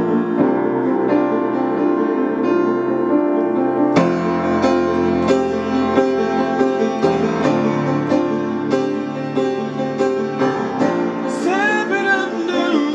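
Acoustic upright piano played solo, chords struck in a steady rhythm, with a strong chord about four seconds in. A male voice starts singing near the end.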